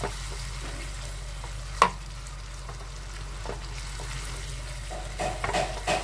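Thick chili spice paste sizzling gently in a frying pan as a spatula stirs it round, with one sharp knock about two seconds in.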